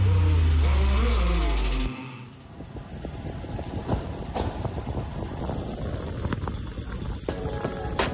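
Music with a falling pitch sweep, cut off abruptly about two seconds in. After the cut come wind rushing over the microphone and tyre noise from a road bike rolling along a town street, with scattered clicks.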